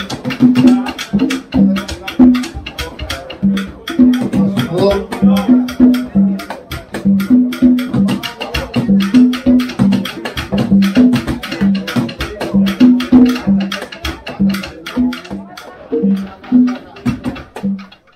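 Live Afro-Cuban rumba: conga drums (tumbadoras) play a steady interlocking pattern of open tones at two pitches, high and low, over a constant run of sharp wooden clave clicks, with voices singing at times.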